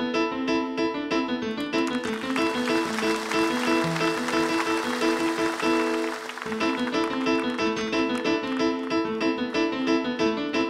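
Solo piano improvisation on a digital stage keyboard with a piano sound, played as a fast, continuous run of notes. For a few seconds in the middle, audience applause rises under the playing and dies away.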